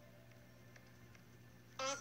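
Near silence with a faint low hum, then a woman's voice begins to speak near the end.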